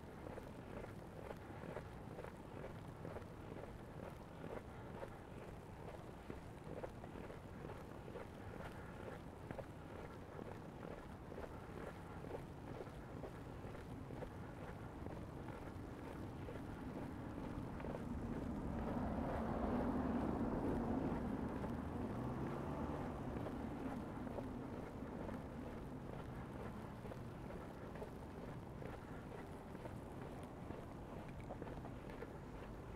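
Footsteps in fresh snow over a steady background of city noise, as a vehicle passes on the snowy street, swelling to its loudest about twenty seconds in and then fading away.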